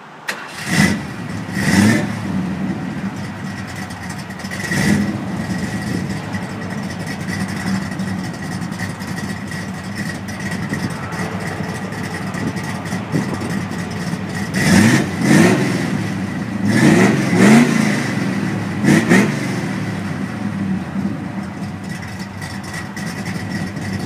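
Classic Ford Galaxie's engine idling steadily through its exhaust, blipped briefly about one, two and five seconds in. It is then revved up several times in quick succession between about fifteen and nineteen seconds in, each rev rising in pitch and falling back to idle.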